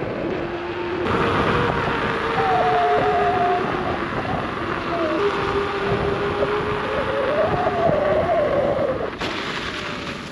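Veteran Lynx electric unicycle being ridden: a thin hub-motor whine that glides up and down in pitch as the speed changes, over steady rushing noise from the ride.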